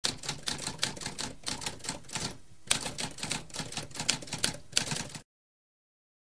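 Typewriter keys being struck in a rapid run of clacks, with a brief pause about halfway and one sharper strike as it resumes; the typing cuts off suddenly about five seconds in.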